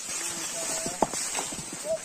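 Footsteps and rustling through dry leaf litter and brush, with a single sharp crack about a second in and brief voices.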